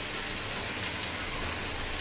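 Hilsa fish curry sizzling steadily in its oil in a pan on the stove, with faint crackles.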